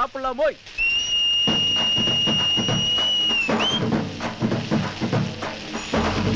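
A long, steady, high finger whistle held for nearly three seconds, ending in a short rising whistle, over a drum beat that starts about a second and a half in as a song's intro begins.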